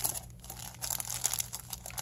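Thin clear plastic packaging crinkling quietly in irregular crackles as hands work a nylon tattoo sleeve out of its bag.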